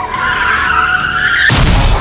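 Car tyres screeching in a skid, a wavering squeal, then a loud crash about one and a half seconds in.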